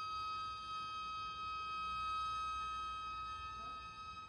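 Violins holding one long, high, steady bowed note, played softly.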